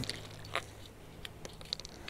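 A few soft clicks and crinkles of fingers pulling apart and peeling a shotgun cartridge's red case to get at the wad inside.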